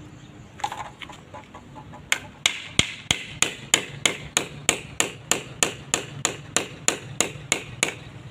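A few light clatters, then about two seconds in a steady run of sharp hammer blows, about three a second, driving a nail to fix a wooden guide strip to the edge of a wall for plastering.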